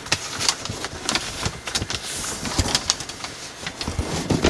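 Thin gold foil origami paper rustling and crinkling as hands flatten and crease it, with many quick, sharp crackles.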